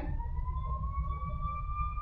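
A thin, high wailing tone that rises slowly and steadily in pitch, over a low steady background hum.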